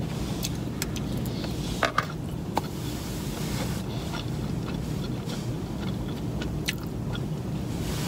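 A mouthful of rice and meat from a burrito bowl being chewed with the mouth closed, with a few soft clicks in the first couple of seconds, over the steady low rumble of a car's cabin.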